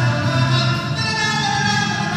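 Live acoustic folk ensemble playing in a hall, wind, strings and piano holding sustained notes over a steady bass line.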